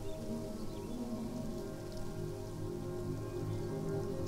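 Ambient electronic soundtrack: several low tones held steady, layered under a fine, rain-like crackling hiss.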